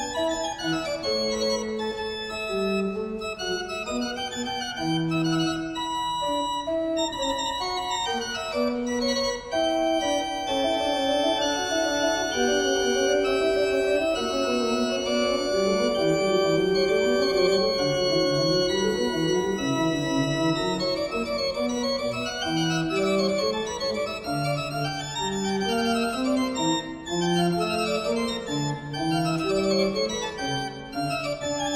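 Baroque organ concerto music: a historic Italian pipe organ with string accompaniment, playing sustained chords and then quick running scale passages that rise and fall from about two-thirds of the way through.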